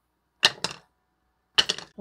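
Sharp hard-plastic clicks from 3D-printed ABS mold halves being handled and set down on a wooden table: a quick pair about half a second in and another pair near the end.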